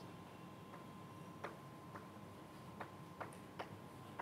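Chalk writing on a blackboard: a string of faint, sharp clicks and taps, about six in four seconds and irregularly spaced, as the chalk strikes the board.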